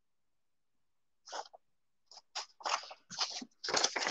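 A few short, soft rustles of paper sheets being handled, starting after about a second of silence and coming more often near the end.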